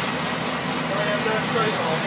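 Steady cabin noise inside a school bus: engine and road rumble with no sudden events.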